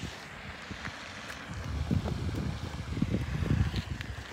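Wind buffeting the microphone, a gusty low rumble that grows stronger about halfway through.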